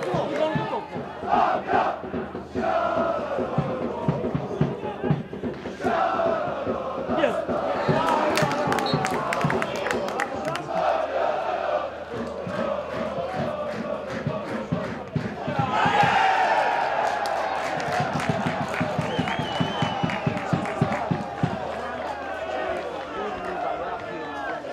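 Football supporters chanting and singing together in the stands over a rhythmic beat. About two-thirds of the way through, the crowd swells into louder cheering as a goal goes in.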